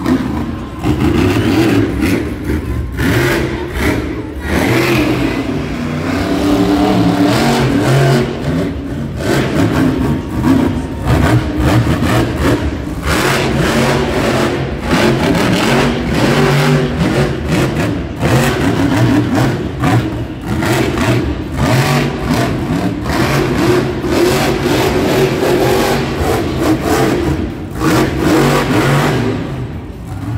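Monster truck's supercharged engine revving hard over and over as the truck wheelies and jumps, its pitch and loudness rising and falling with each burst of throttle.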